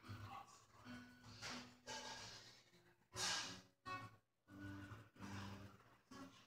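Quiet between-song sounds from a live acoustic set: a few faint, sustained guitar notes, and about three seconds in a short, loud breathy sigh into the vocal microphone.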